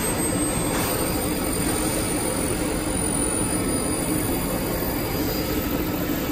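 Minute Key kiosk's key-cutting machine running, a steady mechanical noise with faint steady tones.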